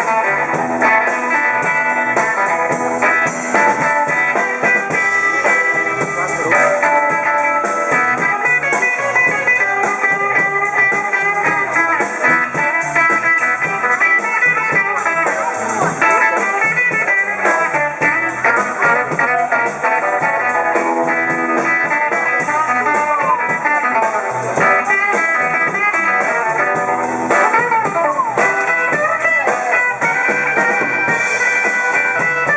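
Live blues band playing an instrumental passage on electric guitars, bass and drums.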